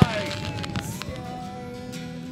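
A firework bang right at the start, followed by long held tones, one slowly rising, with a few faint crackles.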